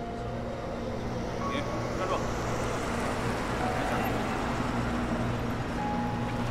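Vintage car driving along a wet street: a steady low engine hum under a wash of engine and tyre noise that grows louder about two seconds in and holds.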